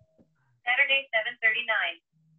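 A person speaking briefly over a video call, a few words in the second half after a short silence.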